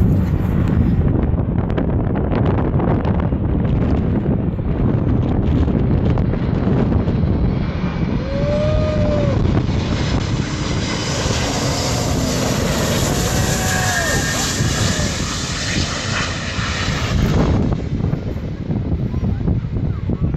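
Antonov An-225 Mriya's six turbofan engines on landing approach: a heavy rumble swells into a loud rushing whine as the aircraft passes low overhead about ten seconds in, then falls away sharply a few seconds later as it moves off down the runway.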